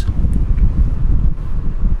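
Loud, low, buffeting rumble of air hitting the microphone, with no other sound over it.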